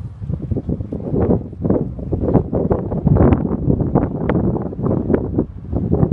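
Gusty wind buffeting the phone's microphone: a low rumble with irregular crackles, louder from about a second in.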